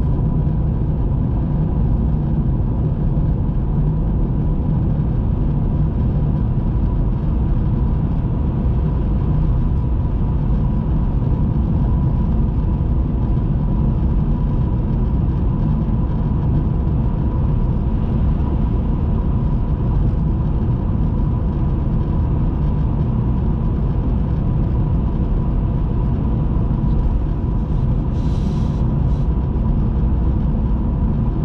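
Steady road and engine rumble inside a car's cabin while driving along an open road, with a thin steady whine underneath. A brief hiss sounds near the end.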